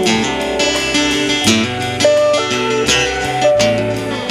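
Live country-rock band playing a short instrumental gap between sung lines: strummed and picked acoustic guitar chords over bass notes.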